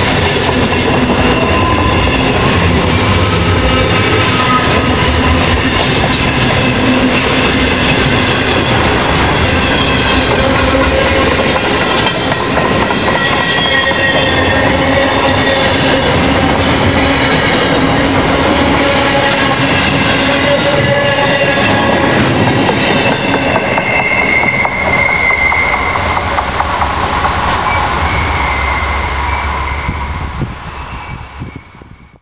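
A container freight train rolling past, its wheels clicking over the rail joints while squealing tones rise and fade over the steady rumble. It stays loud throughout and drops away sharply at the very end.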